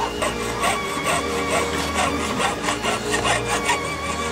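Jeweller's piercing saw cutting out a pressed silver plate, in even strokes about two a second.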